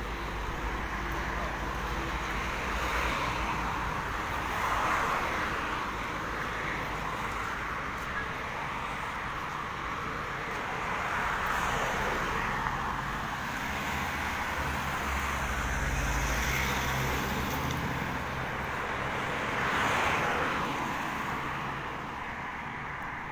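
Street traffic: cars passing on the road, the noise of each swelling and fading several times.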